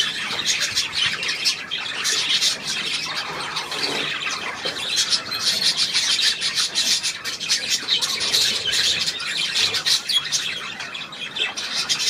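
Many budgerigars chattering and squawking together, a dense stream of quick, high chirps.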